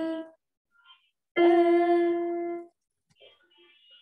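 Electronic keyboard notes heard over a video call. One held note dies away at the start; after a gap a single steady note sounds for just over a second and is released. The notes come one at a time, too slowly for the tune.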